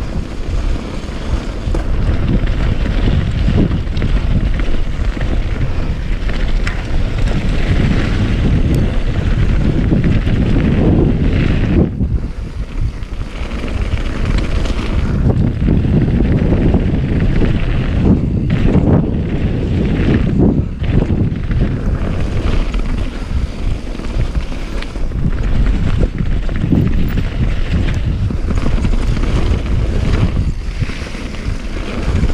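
Wind buffeting the action camera's microphone as a mountain bike is ridden at speed down a rocky gravel trail, mixed with the rolling noise of the tyres on the dirt. The rush eases briefly about twelve seconds in and again around nineteen to twenty-one seconds.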